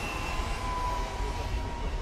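A train running through the station with a low rumble and a steady high squeal that sinks slightly in pitch.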